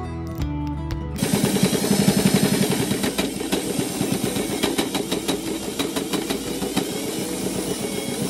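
Background music for about the first second, then a domestic sewing machine running fast and steadily, its needle rapidly stitching through thick quilted layers of fabric and batting.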